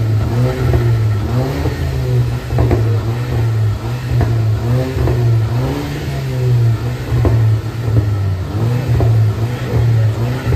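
Audi TT engine revved again and again through its exhaust while the car stands still, the pitch rising and falling roughly once a second over a deep steady drone, with short sharp cracks from the exhaust here and there.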